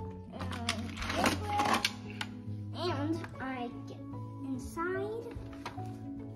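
Background music with a child's voice over it.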